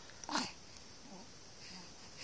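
A newborn baby's small vocal noises: one short, sharp burst about a third of a second in, then a faint low grunt about a second later.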